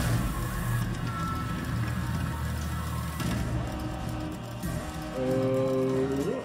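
Online video slot's music and sound effects: a sudden hit as the feature starts, then a steady low drone, with a held chord near the end.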